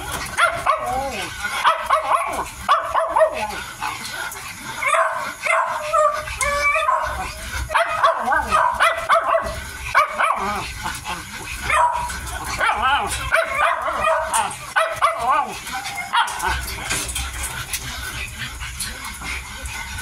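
Miniature dachshund puppies, about eight weeks old, whining and yipping in squeaky, wavering calls almost without pause while they eat, with small clicks and smacks of their feeding in between.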